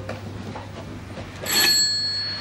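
A reception-counter service bell struck once about one and a half seconds in, its bright ring hanging on.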